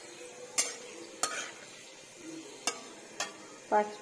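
A steel spatula scraping and knocking against a metal wok four times while whole spices and a dried red chilli are stirred in hot oil, over a faint frying sizzle.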